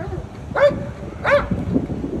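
A police dog barking twice, about seven-tenths of a second apart, with two short, loud barks.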